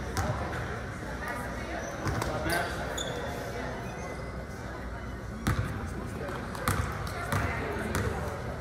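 Basketball bounced a few times on a hardwood gym floor, sharp separate bounces ringing in a large hall; the last three come in the second half.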